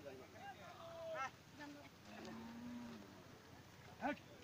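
A cow mooing: short calls, then one long, low, steady moo a little over two seconds in.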